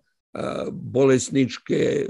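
A man's voice in short, halting fragments after a brief dropout at the start: speech only.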